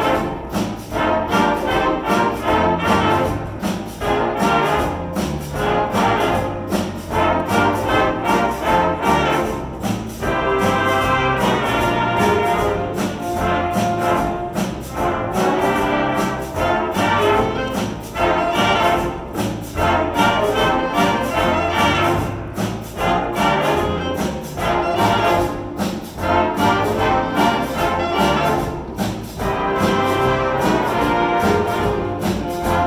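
High school stage band (jazz big band) playing a swing chart built on a blues form: saxophones, trumpets and trombones over a steady swing beat.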